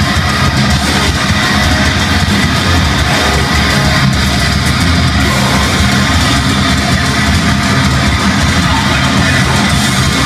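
A heavy band playing live at full volume: distorted electric guitars over bass and drums, continuous and dense.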